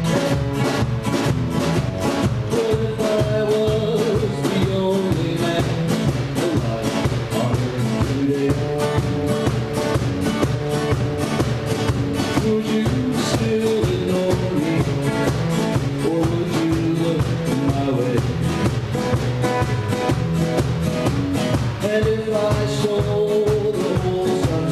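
Live acoustic band playing: two acoustic guitars strummed and picked over a steady drum-kit beat, with a man singing into the microphone near the end.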